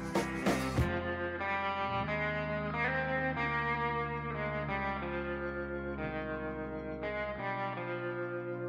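Instrumental background music: a drum beat that stops about a second in, giving way to held notes that change every second or so.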